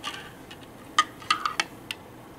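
Metal spoon clinking against the inside of a ceramic mug while stirring hot chocolate: a soft tap at the start, then five quick, ringing clinks from about a second in.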